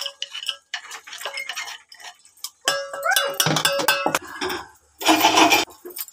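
Kitchen clatter of a spoon and steel dishes: a run of quick clinks and knocks, a louder rattling stretch in the middle, and a rough scraping burst near the end as chopped green chillies and coriander are handled and mixed into mashed potato.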